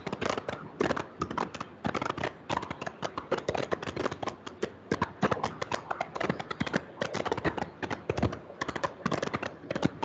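Chalk on a chalkboard being written with: a quick, irregular run of sharp taps and short scrapes, several a second.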